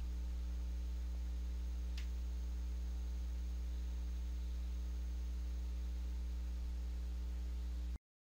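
Steady low electrical mains hum with a faint buzz of overtones above it, left on the recording, and one faint click about two seconds in.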